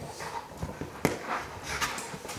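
Dog chewing and mouthing the handle of a hard plastic Jolly Ball toy, with sharp clicks and knocks of teeth on plastic. The loudest come about a second in and near the end.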